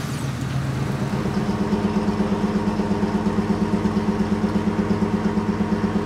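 An engine running steadily at idle, with a fast, even firing pulse. Its pitch steps up slightly about a second in, then holds steady.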